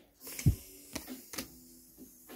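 Pokémon trading cards being handled and put down on a desk: a few light clicks and flicks, with a soft thump about half a second in.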